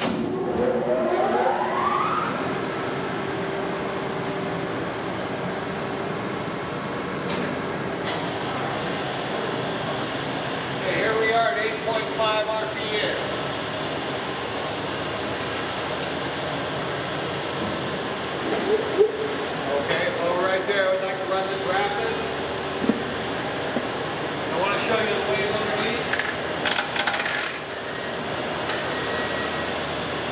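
A Leblond Model NI heavy-duty engine lathe starting up under power: a whine rising over the first two seconds as it comes up to speed, then running steadily with a constant hum.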